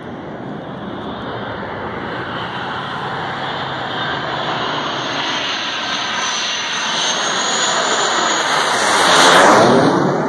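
Blue Angels F/A-18 Hornet jet passing overhead: steady jet engine noise that builds to its loudest about nine seconds in, with a high whine rising in pitch a few seconds before the peak.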